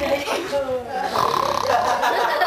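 A man snoring, mixed with people's voices.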